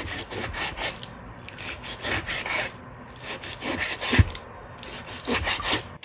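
Kitchen knife cutting lean pork into small cubes on an end-grain wooden chopping board: quick runs of knife strokes hitting the board, broken by a few short pauses, with one heavier thump about four seconds in.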